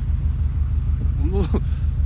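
Subaru Forester's turbocharged flat-four engine idling: a steady, evenly pulsing low rumble.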